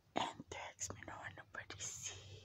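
A person whispering close to the microphone in short, breathy bursts.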